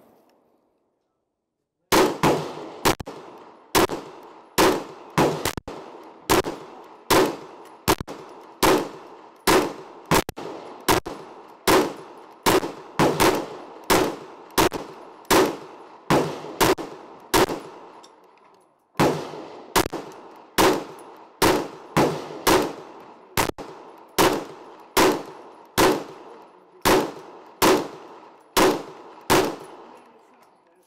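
Kriss Vector carbine firing 9mm 147-grain full metal jacket rounds in steady semi-automatic fire, single shots at about one and a half a second, each followed by a short echo. The shooting starts about two seconds in and breaks off briefly around two-thirds of the way through before carrying on.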